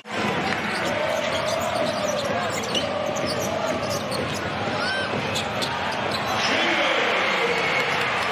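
Arena game sound of a basketball being dribbled on a hardwood court, with short high sneaker squeaks and a murmuring crowd. The crowd noise swells about six and a half seconds in.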